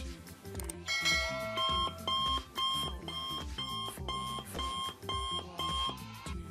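Electronic alarm-clock-style beeping, about two beeps a second, starting about a second and a half in over background music with a steady beat.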